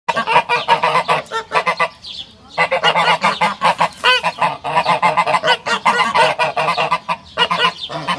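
Pomeranian geese honking in a rapid run of short, repeated calls, with a brief pause about two seconds in.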